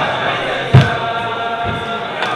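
A group of men singing a niggun together in unison, with a thump keeping the beat about once a second.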